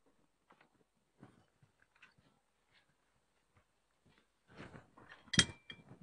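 Porcelain lantern and its battery base being handled: near silence with faint light clicks, then a single sharp knock of ceramic with a brief ring about five seconds in.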